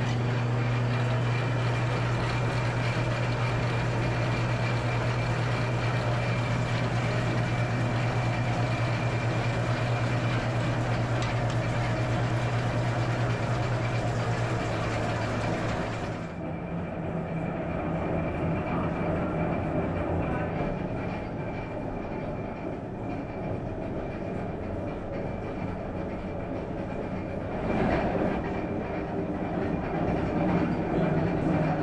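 Wool picker running: its toothed rollers tearing wool while its blower drones, a loud steady machine noise with a strong low hum. About halfway through the sound changes abruptly to a quieter, different machine drone, and shifts again near the end.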